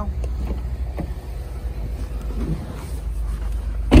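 Lexus IS250C's 2.5-litre V6 idling, with wind on the microphone, and one loud thump near the end as the car door shuts.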